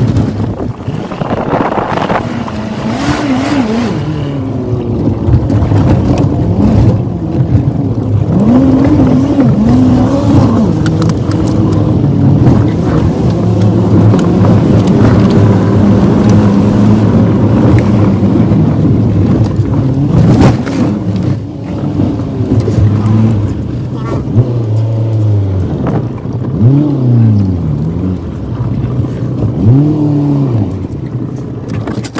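VW Golf Mk3 estate's engine, heard from inside the cabin, revving up and down as the car is driven hard on a gravel road, with quick rises and drops in pitch near the end as it shifts.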